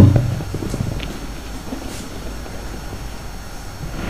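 A single loud thump right at the start that dies away over about half a second, followed by a low steady hum with a few faint knocks and rustles.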